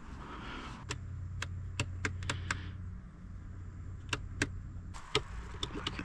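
Sewer inspection camera push cable and reel being handled, giving a series of sharp clicks in two clusters, over a low steady hum that fades out about five seconds in.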